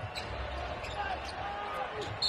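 Live court sound of an NBA basketball game in play: faint squeaks and scattered knocks from players and the ball over a low steady arena background.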